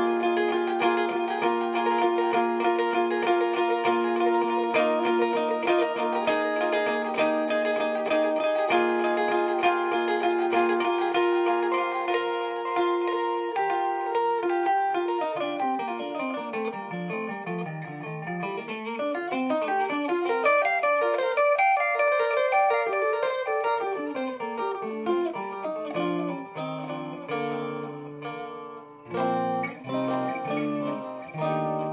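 Electric guitar, an Eastwood Airline 3P Deluxe, played through a Gabriel Voxer 18 tube amp with 18-watt EL84 power and a 2x12 cabinet, with a digital delay pedal repeating the notes. Sustained ringing chords for the first half, then a quick run of single notes sweeping down and back up, and lower picked notes near the end.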